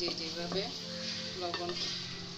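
Wooden spoon stirring and scraping a spice paste (masala) frying in a metal pot, with the paste sizzling and the spoon knocking against the pot a couple of times.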